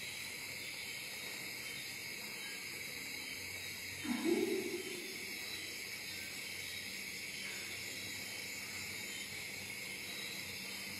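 Steady background hiss, with one short, low sound lasting under a second about four seconds in.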